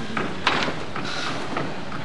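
Outdoor street ambience: a steady wash of city noise, with a sharp knock about half a second in.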